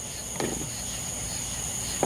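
Crickets trilling steadily in two high, unbroken tones over a soft hiss of falling rain, with one brief soft noise about half a second in.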